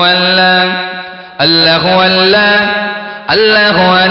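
Zikr chanting of the name 'Allah' by a man's amplified voice, in long held phrases. A new phrase starts about every two seconds, each loud at first and then fading.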